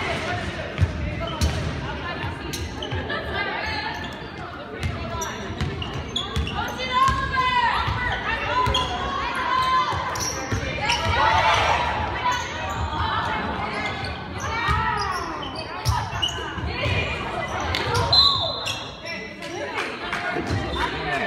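Basketball bouncing on a gym court during play, with voices of players and spectators echoing in a large hall. Short high squeals that rise and fall come and go through the middle.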